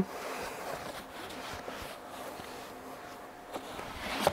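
Faint rustling and sliding of seat-belt webbing as it is pulled through the belt guide of a child car seat, with a light knock about three and a half seconds in.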